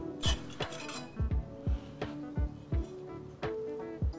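Light metallic clinks and scrapes of a thin sheet-steel part being unclamped and slid out of a manual sheet metal brake, several short strokes spread over the few seconds, over background music with plucked notes.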